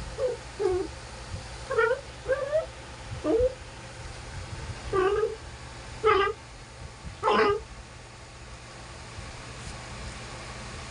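Newborn puppies giving short, high-pitched squeaking cries while nursing, about eight of them in the first three quarters, the last one the longest and loudest.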